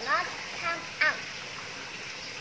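Steady trickle of running water from a garden pond's small fountain, with a few short voice sounds in the first second.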